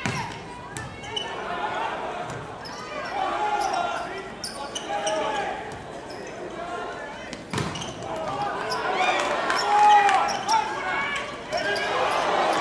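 Volleyball rally in a large indoor hall: sharp slaps of hands on the ball, a hard hit at the start and another midway, with players shouting calls to each other throughout.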